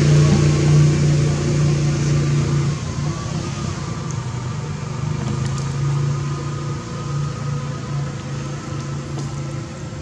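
An engine running steadily nearby, a constant low hum; it is loudest for the first three seconds, then drops and goes on more quietly.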